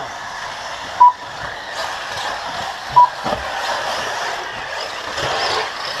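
Two short electronic beeps of one steady pitch, about two seconds apart, typical of an RC track's lap-timing system as cars cross the line, over the steady noise of the buggies racing.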